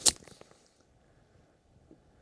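A 58-degree wedge striking a golf ball off the grass: one sharp, crisp strike right at the start, with a brief hiss trailing after it.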